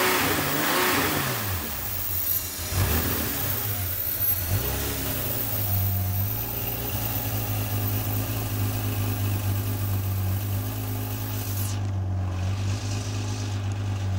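Air-cooled Porsche 911 flat-six (a 3.6 litre in a 1984 car) running with the engine lid open. The revs rise and fall over the first few seconds, then settle to a steady idle about five seconds in.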